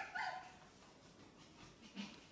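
Maltipoo puppy giving two short high-pitched calls in quick succession right at the start.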